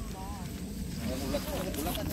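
Faint, indistinct talking.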